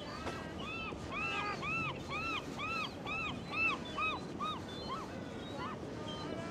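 An animal calling in a series of about a dozen short, clear notes, each rising and falling in pitch, about three a second, growing fainter toward the end.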